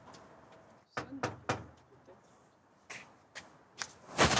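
Footsteps on paving with small clicks: a few light, sharp knocks spaced irregularly, clustered about a second in and again near the end, over a quiet background.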